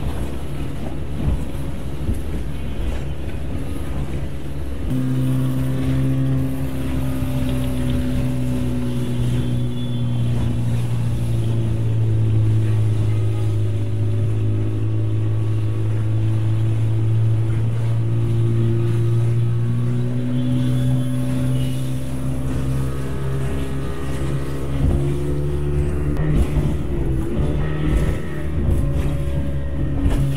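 A motorboat's engine running steadily as a low, even drone, with wind and water noise. The hum grows stronger about five seconds in.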